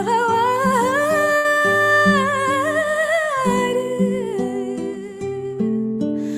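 A woman singing a long melismatic vocal line without words: it rises at the start, holds a high ornamented note, and falls away about halfway through. Beneath it runs an instrumental accompaniment of sustained low notes that change every second or so.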